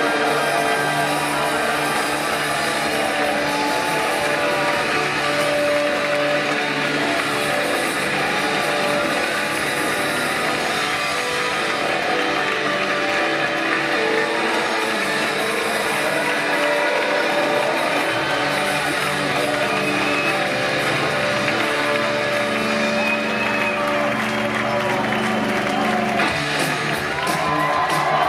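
A live rock band playing, recorded from among the audience in a concert hall: long sustained notes from guitar and keyboard synthesizer.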